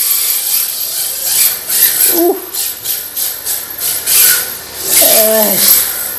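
Belt-driven RC drift car whirring as it slides across a wooden floor, its tyres scrubbing on the boards in a run of short surges as the throttle is blipped.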